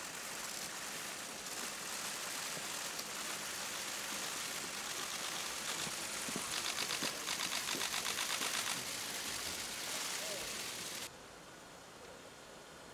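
Camera shutters of press photographers clicking in rapid bursts over a steady hiss of crowd and street noise. The clicking is thickest about halfway through. Near the end the sound drops to quieter street ambience.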